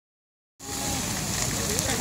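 Steady hiss and crackle of a large timber bonfire being doused by fire-hose water jets, starting about half a second in, with faint voices beneath it.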